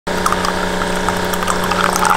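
Coffee machine's pump humming steadily while a thin stream of coffee pours and splashes into a ceramic mug.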